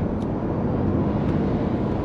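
Steady road and tyre noise inside the cabin of a Mitsubishi Outlander PHEV accelerating at speed on a partly wet track, with a low hum from its 2.4-litre four-cylinder petrol engine running in Power mode.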